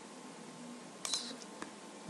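Computer mouse button clicking as a file is selected in a file dialog: one sharp click about a second in and a fainter one about half a second later, over faint room hiss.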